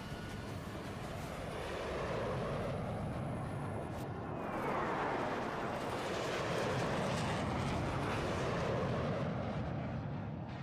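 Jet aircraft noise: a continuous rushing roar that swells and eases several times, like jets passing.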